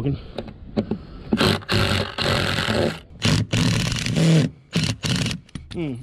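Power drill with a screwdriver bit running in about five short bursts, starting a little over a second in, as it tries to back a stainless steel screw out of a deck bracket. The screw turns without coming out, which the man suspects is because it is spinning on the nut inside.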